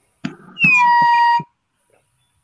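A handheld air horn blown once for just under a second. Its pitch dips slightly at the start, then holds steady before cutting off.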